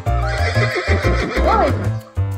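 A horse whinny sound effect, a wavering call rising and falling in pitch for about a second and a half, laid over background music with a steady beat.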